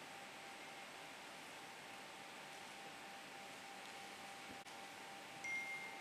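Quiet hall room tone: a faint steady hiss with a thin steady hum tone. Near the end the level rises a little and a short high tone sounds as the podium microphone is approached and handled.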